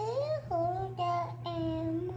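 A young child singing wordlessly to herself in a high voice: a rising slide at the start, then a few short notes and a longer held note in the second half.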